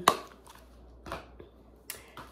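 Plastic packaging of a Scentsy wax bar being handled: a sharp click right at the start, a faint tap about a second in, and a short crisp click near the end.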